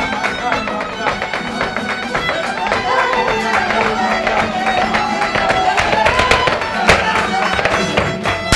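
Live flamenco music: a violin plays a wavering melody over dense rhythmic palmas hand-clapping. There is a single loud, sharp strike about seven seconds in.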